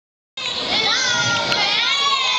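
Many children's voices at once, overlapping and calling out together, starting abruptly about a third of a second in.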